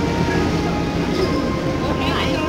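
Busy market-stall background noise: a steady low rumble with a faint, steady high hum running through it.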